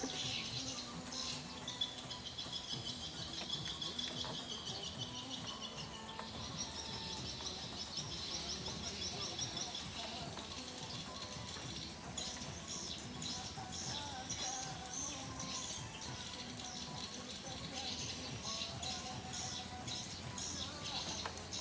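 Birds chirping and trilling continuously, breaking into short separate chirps in the second half, over faint music in the background.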